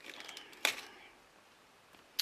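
A few light clicks and taps of stamping supplies being handled on a craft mat, with one sharper click just over half a second in, then near quiet.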